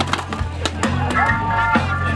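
Live blues-rock band playing, with a steady bass line and a held note that slides up about a second in. A few sharp knocks sound over the music in the first second.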